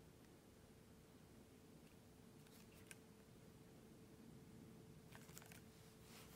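Near silence: room tone with a faint steady hum and a few faint light clicks.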